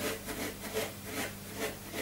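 A hairbrush raked repeatedly through dry afro hair, lifting it outward: quick scratchy strokes, about five a second.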